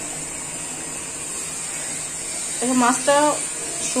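Fish curry cooking in a wok on the stove: a steady, even hiss from the hot pan and gravy.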